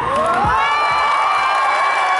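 A crowd of teenagers screaming and cheering, many high voices sliding up together and holding high. The hip-hop music under them stops with a last low beat about half a second in.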